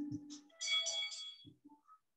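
Boxing round-timer bell ringing in a few quick strikes, signalling the start of the round.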